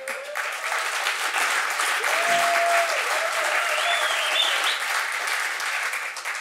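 Studio audience applauding steadily in response to a stand-up punchline.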